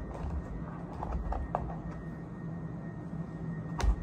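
Small dental supplies and plastic packaging being handled on a tabletop: scattered light clicks, taps and low bumps, with a sharper knock near the end.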